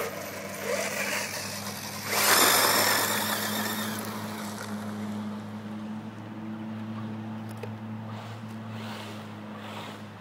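Radio-controlled buggy accelerating away across loose gravel: a loud burst of motor and spraying gravel about two seconds in, then its sound slowly fading as it drives off, over a steady low hum.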